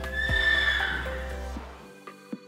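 A horse whinnies once, a high call lasting about a second that fades away, over background music that dies down by the end.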